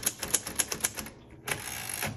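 1950 Royal Quiet Deluxe manual typewriter: a quick run of keystrokes, about seven sharp clacks in the first second. After a short pause, the carriage is thrown back with the return lever, a brief sliding rasp about one and a half seconds in.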